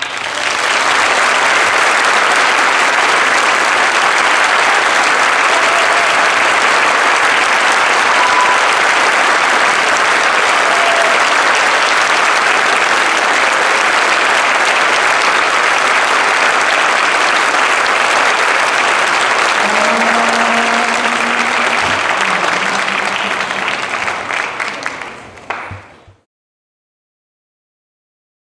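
Audience applauding in a concert hall, a dense steady clapping that starts as the band's music stops and fades out in the last second.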